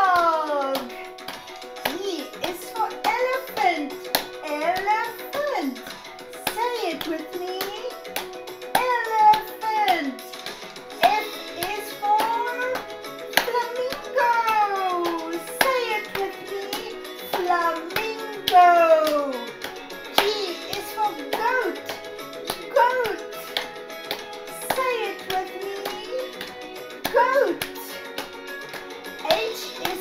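Children's sing-along song: a woman singing animal words in sliding, sing-song phrases over backing music, clapping her hands along with the beat.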